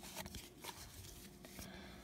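Faint rustling and soft ticks of cardboard trading cards being handled and slid against one another, over a faint steady hum.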